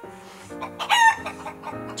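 A chicken's short squawk about a second in, edited in over background music with sustained notes that starts about half a second in.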